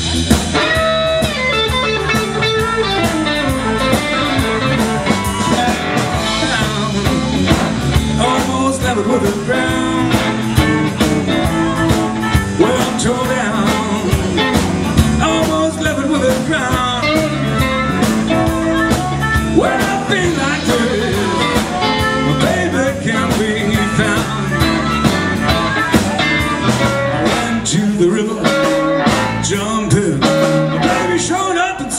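Live blues band playing an instrumental intro: electric guitar, bass and drums keep a steady shuffle while a blues harmonica plays a wailing lead with bent notes.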